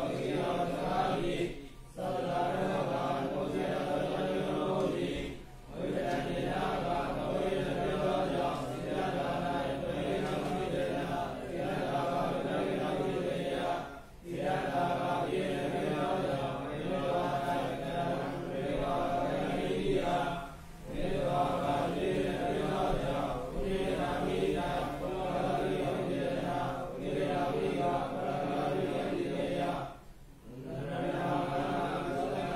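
A Buddhist monk chanting Pali text in a steady intoned voice. The long phrases are broken by brief pauses for breath every few seconds.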